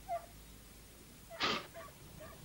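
An animal's short cry, then a sudden loud noisy burst about one and a half seconds in, followed by faint short cries.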